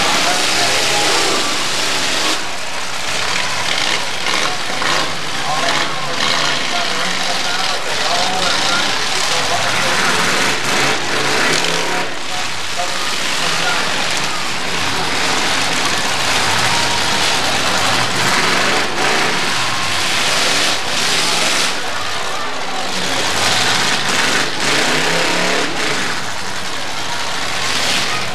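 Demolition derby cars' engines running and revving as they ram each other, with occasional sharp crunches of impact over a dense, loud din.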